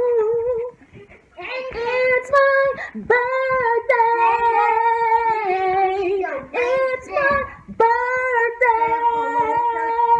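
A high voice singing without clear words, holding long drawn-out notes of a second or two each with a few steps in pitch. It starts about a second and a half in after a short pause.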